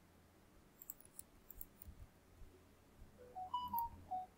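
Faint clicks of a computer mouse and keyboard. Near the end comes a short run of four or five brief pitched notes, stepping up in pitch and back down.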